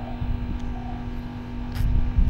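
A vehicle engine running with a steady hum under low rumble that swells near the end, and one short click late on.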